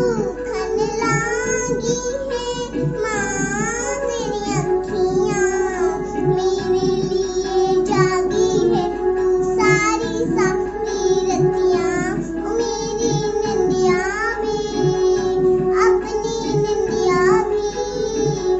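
A young girl singing a song over a backing music track with steady held notes.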